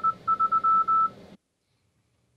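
Arduino-based Iambino CW keyer's sidetone sending Morse code at 20 words per minute: a single steady high-pitched beep keyed on and off in dots and dashes, stopping about a second in.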